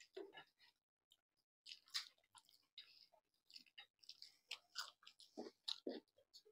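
Very quiet eating sounds of people eating rice and curry by hand: irregular soft chewing and mouth noises with small clicks, coming a little more often in the second half.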